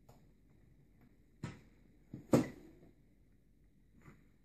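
Two sharp knocks, a little under a second apart, the second one louder with a brief ring, as the plasma TV's aluminium chassis frame is pulled free and lifted off the display panel.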